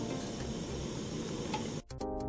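Portable gas stove burner hissing steadily with its flame lit, cut off suddenly near the end.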